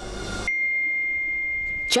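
A single steady, high electronic beep lasting about a second and a half, starting about half a second in: a phone's incoming-message alert tone.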